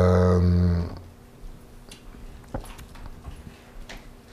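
A man's deep voice holding one long, level, chant-like tone that stops about a second in, followed by low room sound with a few faint clicks.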